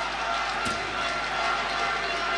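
Football stadium crowd noise, a steady wash of distant voices, with a single brief thud about two-thirds of a second in.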